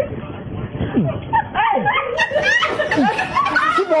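Several people shouting and laughing over one another during a physical scuffle, with a few falling cries and a few short knocks.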